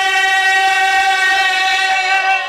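A loud, steady tone held at one unchanging pitch, rich in overtones, with faint voices beneath it.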